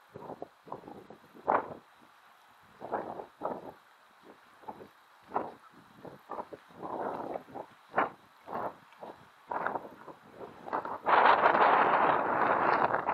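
Wind buffeting the microphone in irregular gusts, each a brief rush of noise with quiet between. About a second before the end it turns into a longer, louder gust.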